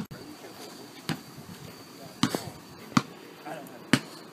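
Footsteps on a concrete sidewalk: four sharp footfalls roughly a second apart.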